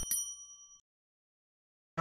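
Subscribe-button sound effect: a mouse click, then a single bright bell ding that rings and fades out within about a second. Its signal is the channel-notification bell being switched on.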